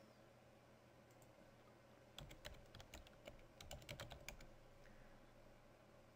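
Faint computer keyboard typing: a quick run of keystrokes from about two seconds in to about four and a half seconds, over a low steady hum.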